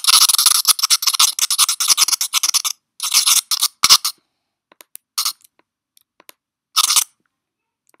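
Pencil-drawing sound effect: a pencil scratching in quick, continuous strokes for nearly three seconds, then a few short separate strokes, the last a second before the end.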